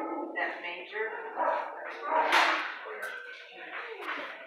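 Dogs barking in a shelter kennel, several barks with the loudest about two and a half seconds in, over indistinct human voices.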